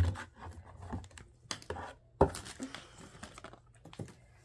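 A new leather bridle being handled and untangled: scattered light clicks and rustles of its straps and metal buckles, with a sharper knock at the start and another about two seconds in.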